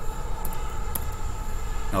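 Steady low rumble of background noise, with one faint click about a second in.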